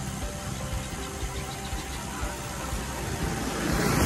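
Wind and road noise from moving along with a group of road cyclists on a concrete road: a steady rush with a low rumble that swells near the end, under faint background music.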